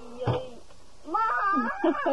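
A child's playful, wordless high-pitched vocal sounds, wavering and sliding in pitch, starting about a second in, after a short brief sound near the start.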